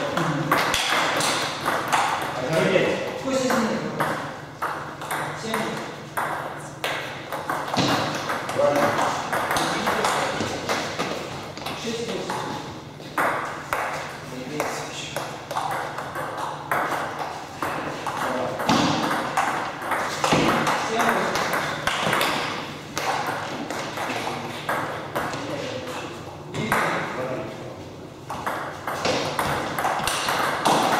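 Table tennis balls being struck by rackets and bouncing on the table in rallies: a long run of short, sharp clicks.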